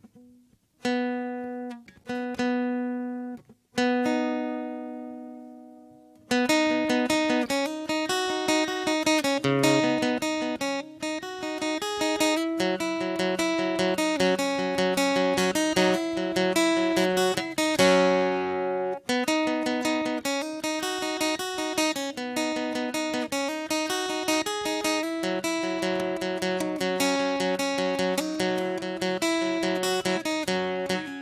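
Acoustic guitar: a few single notes each left to ring out and fade, then from about six seconds in a fast, steady picked pattern of notes that runs on, dipping briefly around nineteen seconds in.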